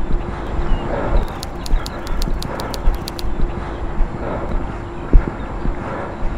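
Outdoor handheld recording on an airfield: irregular low thumps, like footsteps and wind buffeting the microphone, over a steady low hum. A quick run of about ten sharp high clicks comes between one and three seconds in.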